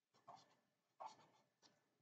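Felt-tip marker scratching on paper in three short, faint strokes, the second about a second in.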